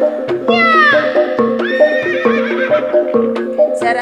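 Gamelan accompaniment for a horse trance dance: a steady repeating pattern of metallic pot-gong and metallophone notes with drum strokes. About half a second in, a high falling horse-like whinny cries out over it, followed by a shorter high call.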